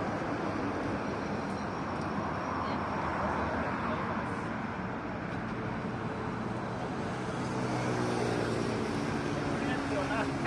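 Steady road traffic noise with people's voices in the background.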